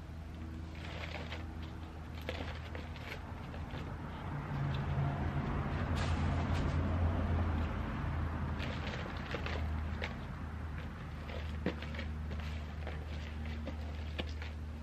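Potting soil and plastic seed pots being handled, with light clicks and crackles of plastic and dirt, over a steady low machine hum that swells for a few seconds in the middle.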